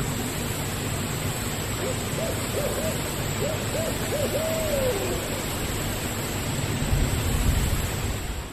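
Owl hooting faintly in the distance: a run of short hoots from about two seconds in, closing with a longer falling note, over a steady background hiss.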